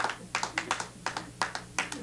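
Hands clapping in quick, uneven claps, urging on a cyclist pushing hard in a lab exercise test, over a faint low steady hum.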